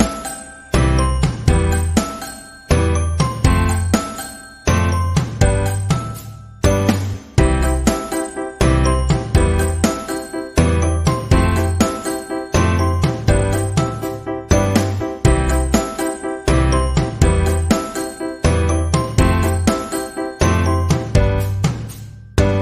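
Background music: a light tune of short notes that start sharply and fade away, over a regular bass beat.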